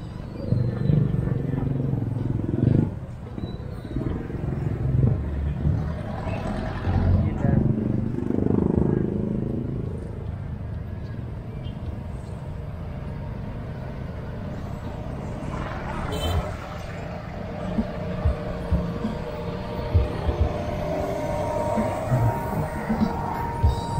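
Outdoor promenade ambience: people's voices talking in the first half over a steady low rumble of road traffic, which carries on alone in the second half.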